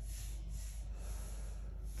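A person's slow, deep breath through the nose, over a steady low room hum.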